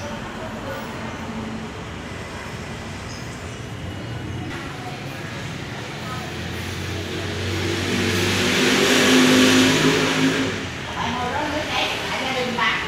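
A motor vehicle passing on the street: its engine and road noise grow louder to a peak about nine seconds in, rising and then falling in pitch, and fade away within a couple of seconds.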